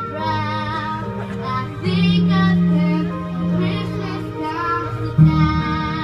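Children's choir singing, with long held notes over a steady low accompaniment and a louder entry about five seconds in.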